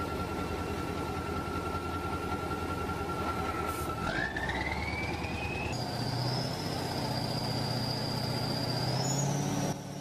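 KrAZ 6x6 diesel truck running under load while its winch hauls a tractor through mud: a steady low engine rumble with a high whine that climbs in pitch about four seconds in and rises again later.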